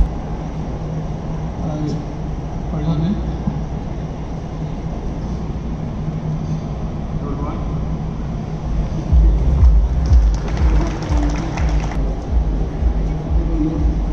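Music and an indistinct voice over a large hall's public-address system, with steady held low notes. From about nine to twelve seconds a louder, noisy stretch with low thumps rises over it.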